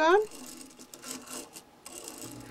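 Faint scrapes and small clicks of a plastic curtain-track roller carrier and its claw clip being handled in a flexible curtain track.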